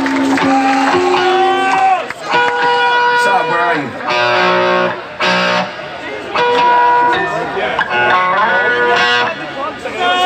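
Electric guitar through an amp playing held single notes and bends, with short pauses between them, and voices over it.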